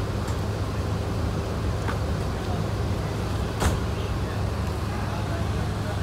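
Mercedes-Benz OH 1626 bus's diesel engine running with a steady low drone as the bus pulls away. A single sharp click comes about halfway through.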